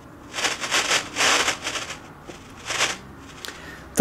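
Ghost box, a sweeping spirit-box radio, giving a few short bursts of radio static with quieter gaps between. Its noise filter is set so the static only just breaks through now and then.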